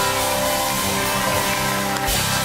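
Game-show sound effect: a held synthesized chord that starts suddenly and cuts off after about two seconds.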